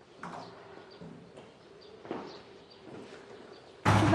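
Faint, scattered bird chirps over a low steady hum, a few short falling calls a second or so apart. A voice starts loudly right at the end, asking '吃饭了吗'.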